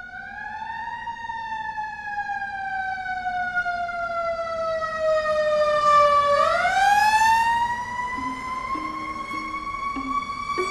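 Emergency vehicle siren wailing. Its pitch falls slowly for about five seconds, then rises quickly about six seconds in, where it is loudest, and levels off again.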